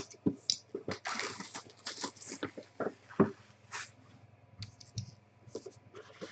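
Hands handling a cardboard trading-card box: scattered light clicks, taps and rustles, with a longer rustle about a second in.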